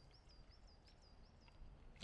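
Faint bird song in woodland: a run of short, even high notes at one pitch, about four a second.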